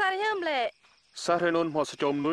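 Film dialogue dubbed in Jarai: a higher-pitched voice speaks briefly, then after a short pause a lower man's voice begins talking.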